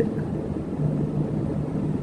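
A steady low rumble of background noise, with a faint constant hum.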